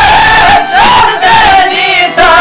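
Several men singing loudly together in Albanian folk style, holding long wavering notes that bend between pitches, with çifteli lutes played under the voices.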